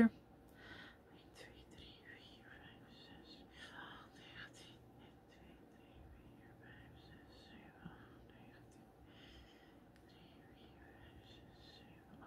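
A woman whispering under her breath as she counts crochet stitches toward 29.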